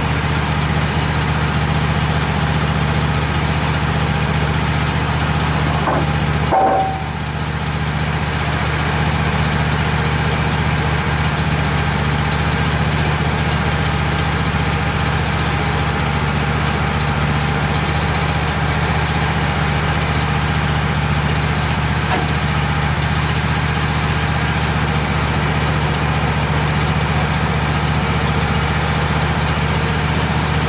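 Wood-Mizer LT15 portable sawmill's engine idling steadily with the blade not cutting. A brief knock and a short dip in the engine sound come about six to seven seconds in.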